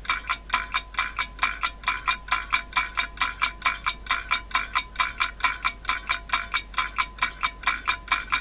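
Countdown timer sound effect ticking evenly, about four ticks a second, each tick with a short bright metallic ring.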